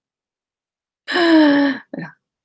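A woman's laughing sigh: after about a second of silence, one long voiced breath out that falls slowly in pitch, followed by a brief catch of breath at the end.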